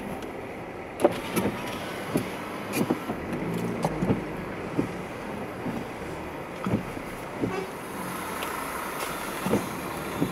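A car moving slowly on a wet road, heard from inside the cabin: a steady running hum with irregular sharp clicks and knocks about once a second.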